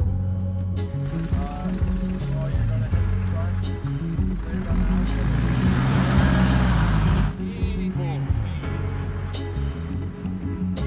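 Background music with a steady beat throughout. Over it, a Mitsubishi Delica 4x4 van is driving on snow: its engine and tyre noise build into a rising rush from about four and a half seconds in, then cut off suddenly a little after seven seconds.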